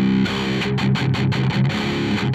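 Distorted electric guitar played through a Zoom G3Xn multi-effects high-gain patch (overdrive, amp model, compressor, cabinet and EQ), a held chord giving way about a quarter second in to a fast chugging riff with short gaps between the notes. The EQ block is switched on, making the mids and highs a bit more present.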